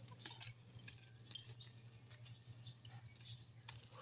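Faint, scattered scraping and light clicks of small bladed hand tools digging and weeding in garden soil, over a low steady hum.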